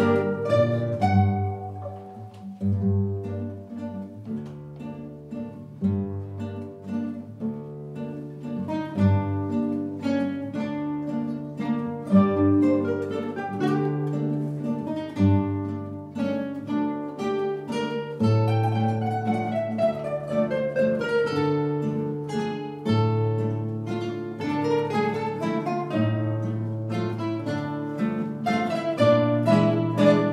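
Ensemble of twelve classical guitars playing a waltz: plucked melody and chords over low bass notes. It goes softer a couple of seconds in, swells fuller from about nine seconds, and has falling runs around twenty seconds in.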